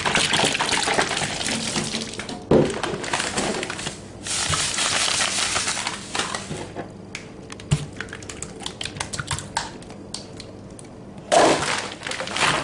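Milky ice-cream mixture being poured and stirred in a glass bowl: two stretches of liquid splashing and sloshing, then scattered small clicks and taps, with a sharp knock near the start and another near the end.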